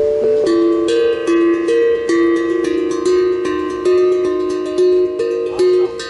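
A steel tongue drum (glucophone) played with mallets. A simple melody of clear, ringing notes is struck about two or three times a second, and each note rings on under the next.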